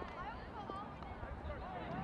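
Several indistinct voices calling and shouting at once across a youth lacrosse game, with one sharp click a little under halfway in.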